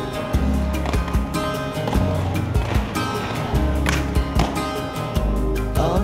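Instrumental stretch of a soundtrack song, with a steady beat and deep held bass notes; no vocals.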